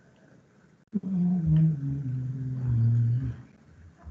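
A man's voice making a drawn-out "ohhh", starting suddenly about a second in, held for about two seconds and sliding slowly lower in pitch.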